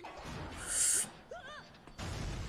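Soundtrack of an anime episode: a short hissing burst about half a second in, then a brief exclamation from a character's voice with pitch that rises and falls.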